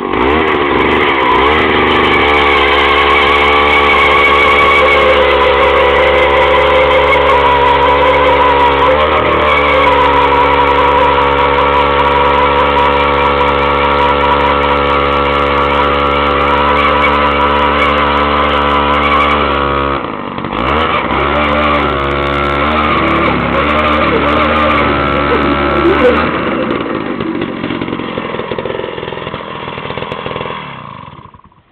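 Gas-powered ice auger engine running hard at a steady high speed while its spiral bit drills through about 16 inches of lake ice. About two-thirds of the way through, the engine note dips briefly, then runs unevenly for a few seconds before fading near the end.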